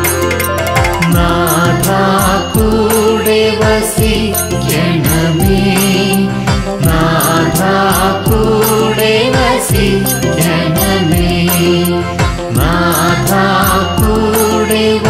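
Malayalam Christian devotional song: a voice singing a wavering melody over keyboard-style accompaniment with a steady beat.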